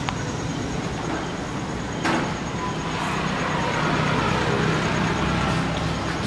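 Steady roadside traffic noise, with the low rumble of a vehicle engine running close by. There is a single short knock about two seconds in.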